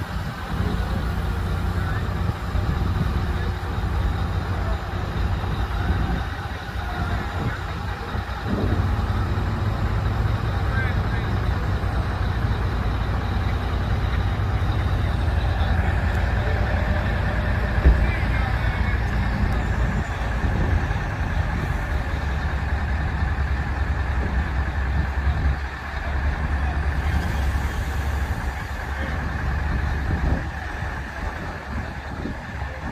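Truck-mounted mobile crane's diesel engine running steadily under load while it hoists a commercial HVAC unit, with a steady high whine joining about halfway and a single sharp knock just after.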